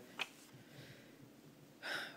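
A woman's pause at the microphone: a small mouth click early, then a short, audible intake of breath near the end.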